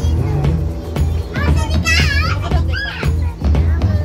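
Background music with a steady bass beat, over which a young child lets out high-pitched squealing vocalisations twice near the middle.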